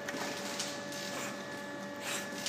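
Water sloshing and splashing as a large black dog and a swimmer paddle together in a pool, over a steady mechanical hum with a constant whine.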